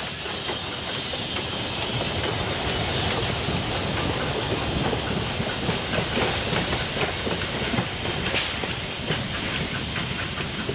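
Steam rack-railway locomotive passing close by: a steady hiss of escaping steam, with irregular clicks and knocks from the running gear and rails that stand out more from about halfway as it draws away.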